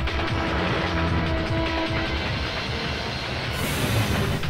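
Film soundtrack: a train running, with a fast rumbling clatter of wheels under background music, and a high hiss coming in near the end.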